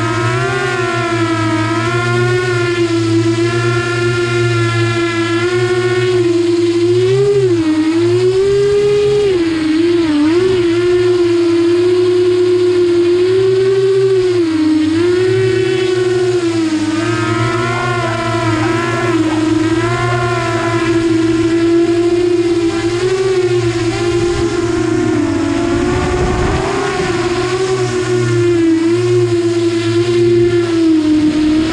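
Multirotor drone's motors and propellers whining close up, heard from on board: one pitched whine that dips and rises as the throttle changes, over a steady low hum.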